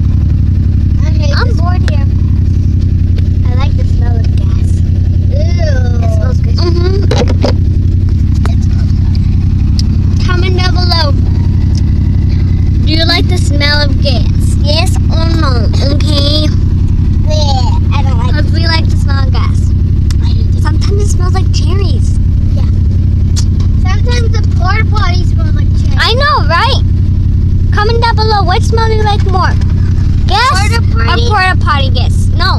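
Steady low rumble of a car in motion, heard from inside the cabin, with high-pitched children's voices talking at intervals over it.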